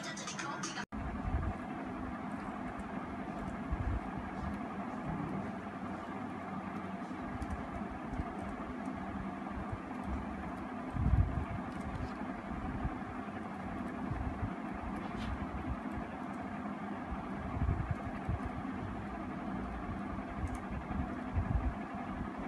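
Phone music that stops abruptly within the first second, followed by steady background room noise with a low rumble, scattered soft knocks and one louder thump about eleven seconds in.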